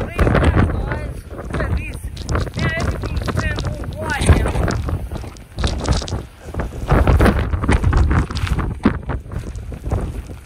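Blizzard wind buffeting a phone's microphone in loud, uneven gusts, with a man's voice calling out briefly a few times over it.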